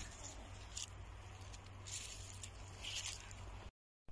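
Faint rustling and scuffing of someone walking with a handheld camera, a few short scrapes over a steady low rumble of wind and handling on the microphone; the sound cuts out abruptly near the end.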